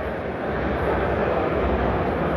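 Steady low rumble of background noise in a large exhibition hall, with no voice over it.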